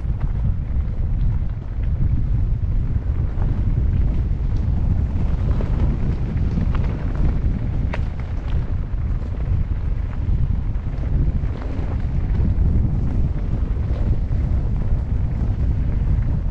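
Wind buffeting an action camera's microphone as a mountain bike rolls fast down a loose, rocky dirt trail, with scattered ticks and knocks from the tyres on stones and the bike rattling.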